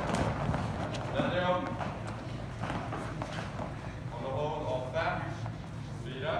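A group of children doing burpees on a rubber gym floor: a patter of thuds from hands, feet and bodies landing and jumping, with voices calling out now and then.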